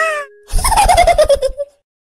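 A cartoon character's voice: a brief cry that glides up and down. After a short pause comes a longer falling, wavering vocal sound, which cuts off into dead silence about three-quarters of the way through.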